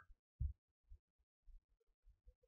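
Quiet room tone with a soft low thump about half a second in, followed by a few fainter low bumps.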